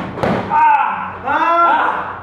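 A wrestler grappling in a hold on the ring mat, with a sharp thud near the start and then a loud, strained cry of "Ah!" a little over a second in.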